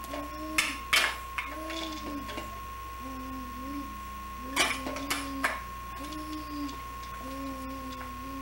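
A baby babbling in short, level-pitched syllables, roughly one a second, with plastic toys clacking a few times, about a second in and again around the middle. A steady thin high tone runs underneath.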